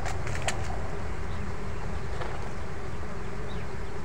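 Swarm of bees buzzing steadily around a freshly cut piece of wild honeycomb, with a few faint clicks about half a second in.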